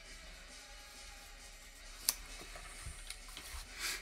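Scissors cutting a strip of thin craft foam: one sharp snip about two seconds in, a few faint ticks, and a short rustly cut near the end.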